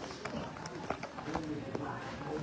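Indistinct background voices chattering, with several sharp clicks of pool balls striking.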